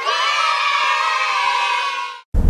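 A group of children cheering together, starting suddenly and cutting off after about two seconds.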